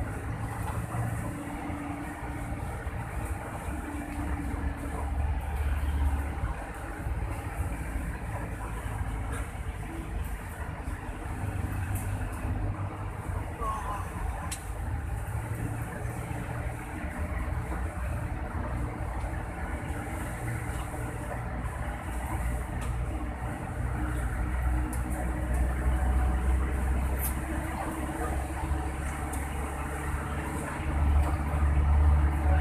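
Low, steady engine rumble of a vehicle heard from inside its cab while it moves slowly in traffic, swelling a little at times, with a few faint clicks.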